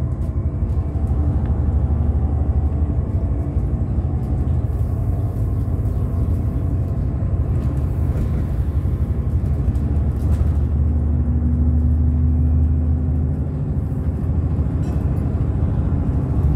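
Bus engine and road rumble heard from inside the moving bus, a steady low drone. A humming engine note comes in about ten seconds in and fades about three seconds later.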